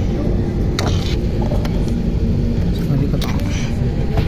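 Steady low rumble inside an airliner cabin on the ground, with background passenger chatter over it.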